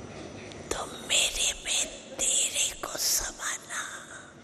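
An elderly woman speaking softly in a breathy, near-whispered voice. She speaks in several short phrases that begin about a second in.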